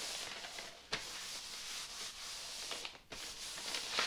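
Paper towel wiping over a goatskin banjo head to rub off freshly applied stain: a steady rubbing hiss, broken by short pauses about a second in and about three seconds in.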